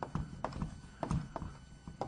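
Chalk on a blackboard: a run of sharp taps and strokes, about three or four a second, as writing goes onto the board.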